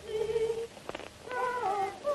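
Babies crying: a series of short, wavering wails that bend downward in pitch.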